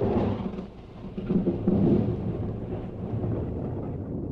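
Thunder rumbling over rain, with a swell at the start and a second, bigger swell about a second and a half in, then slowly dying away.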